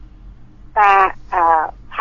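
A woman's voice speaking two drawn-out syllables, over a steady low hum.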